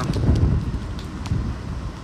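Wind buffeting the phone microphone: a loud, gusty low rumble, strongest in the first second, with faint ticks over it.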